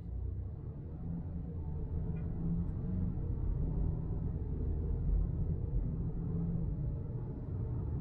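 Ford Maverick's turbocharged EcoBoost four-cylinder engine heard from inside the cab as the truck pulls away at low speed, a low drone that grows louder over the first few seconds and then holds steady. The owner calls it a very weak-sounding motor and puts the odd sound down to the EcoBoost.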